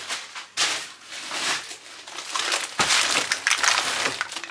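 Plastic shopping bags and wrapping rustling and crinkling as groceries are rummaged through and lifted out, in irregular bursts with a sharper knock about three seconds in.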